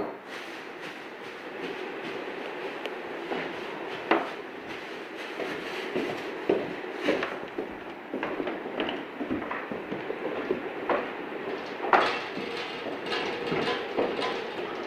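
Steady room noise with scattered sharp knocks and clicks a few seconds apart.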